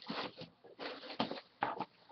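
Bubble wrap and packaging rustling and crinkling in three or four short bursts as they are handled.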